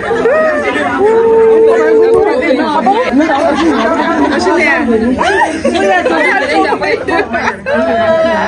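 Excited chatter of several women's voices talking and exclaiming over one another, with one long drawn-out exclamation about a second in.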